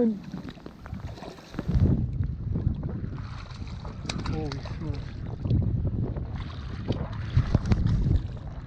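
Wind buffeting the microphone, with splashes from a hooked smallmouth bass thrashing at the surface by the shoreline rocks, the sharpest near the end. A brief voiced exclamation comes about halfway through.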